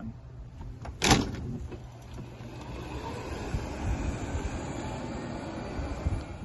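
A golf cart driving, a steady running noise with a low hum, after a sharp knock about a second in.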